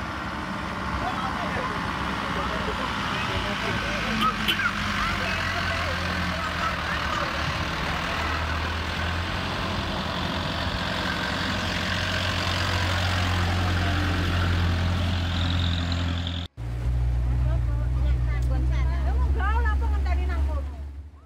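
A passenger vehicle's engine running with a steady low drone, with several voices chattering indistinctly over it. The sound cuts off for a moment near the end, then the drone carries on slightly louder.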